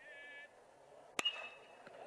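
Metal (aluminium) baseball bat striking the ball about a second in: a sharp ping with a short ring after it, as the batter puts the ball in play toward right-center field.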